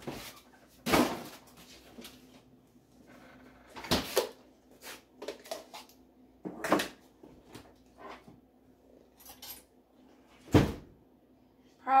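Kitchen handling sounds: several sharp knocks and clunks of a kitchen door shutting and items being picked up and set down on the counter, about four loud ones a few seconds apart, over a faint steady hum.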